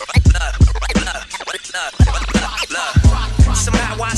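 Hip-hop track with hard drum hits over a deep bass line and chopped vocal snippets cut in between the hits. The bass drops out briefly in the middle and comes back about two seconds in.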